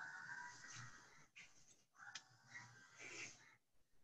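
Near silence, with two faint stretches of hiss-like noise in the first second and again later.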